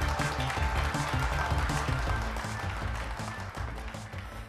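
TV quiz show's opening theme music, with a driving rhythmic bass line, easing down in level toward the end.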